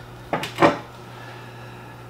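A tool working at the cork of a wax-sealed Knob Creek whiskey bottle, two short sharp scrapes with a falling pitch a few tenths of a second apart early on, as the stuck cork is forced.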